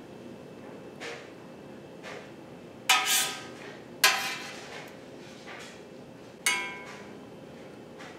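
A metal curd knife knocks against a stainless steel stockpot while cutting a set mozzarella curd into cubes. There are three sharp, ringing clinks about a second apart and then a couple of seconds later, with a few fainter taps before them.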